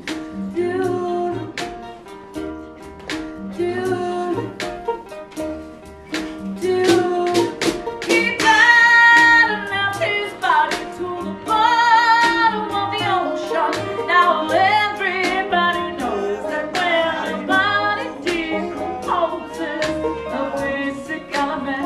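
Live acoustic string band playing a slow song: upright bass, lap steel guitar with sliding notes, resonator guitar and light drums, with a woman singing.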